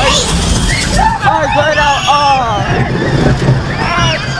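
Roller coaster train running on its track with a steady low rumble. Over it are wordless voices that rise and fall in pitch, strongest from about a second in.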